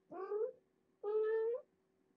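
A cat meowing twice, each call about half a second long and rising slightly in pitch.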